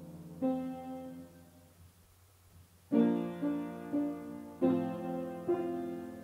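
Solo piano music: a chord struck about a second in, then a run of chords from three seconds on, each ringing and fading.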